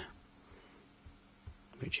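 Near silence: room tone in a pause between a man's spoken words, with one faint soft knock about one and a half seconds in.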